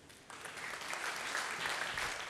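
Audience applauding, a dense steady clapping that starts about a third of a second in.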